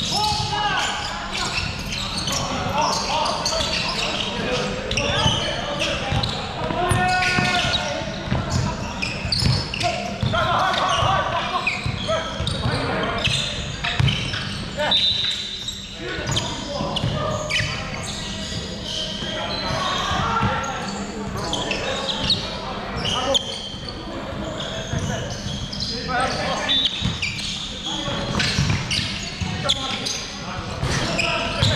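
Basketball game play in a large gym hall: a basketball bouncing on the wooden court in many short sharp thuds, with players' voices calling out, all echoing in the hall.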